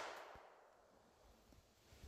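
The fading echo of a .32 ACP pistol shot dies away within about half a second, then near silence.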